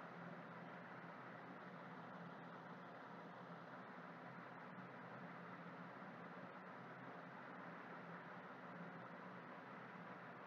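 Near silence: steady microphone hiss with a faint low hum.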